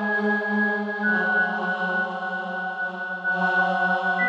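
Slow instrumental music of long held notes over a low sustained bass note, the chord shifting about a second in, with no drumbeat.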